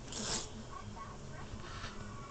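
A short rasping rustle of puffy duvet fabric, with a fainter rustle near the end, over a low steady hum.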